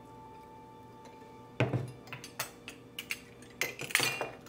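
Glass bottles being handled on a tabletop, giving a run of light clinks and knocks that start about a second and a half in, over faint background music.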